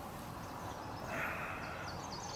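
Faint outdoor background noise at a lake shore. A steady, higher-pitched sound joins about a second in and lasts to the end.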